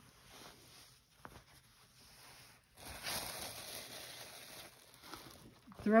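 Cotton quilting fabric on bolts rustling and sliding as it is unrolled and handled, a soft hiss lasting about two seconds from around the middle, with a light click a little earlier.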